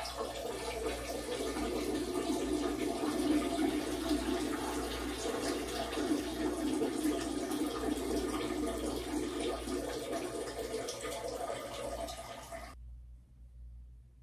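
A man urinating into a toilet bowl: a steady stream splashing into the water that cuts off suddenly near the end.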